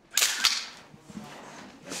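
Still camera's shutter firing with a motor-drive wind: a sharp, quick double click-and-whirr about a third of a second long, shortly after the start.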